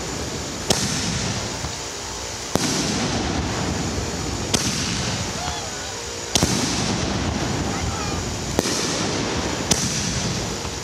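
Excalibur 1.75-inch canister shells, fused to fire one after another, launching and bursting. A sharp bang comes about every two seconds, six in all, over a steady wash of noise.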